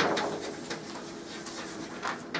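Faint chalk on a blackboard: a few light taps and scratches as a word is written.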